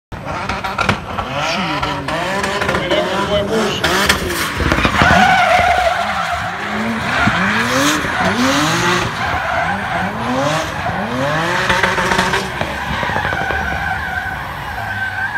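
Drift car's engine revving up and down again and again, roughly once a second, as the driver works the throttle through a slide, over the steady squeal of its spinning rear tyres.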